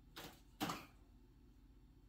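Two short rustles about half a second apart, from a pawpaw seedling and its soil being handled out of a fabric root-pruning bag, then only faint room hum.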